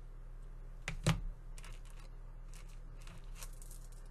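Small clicks and rustles of two pairs of jewellery pliers working a metal split ring open, with a louder tap about a second in.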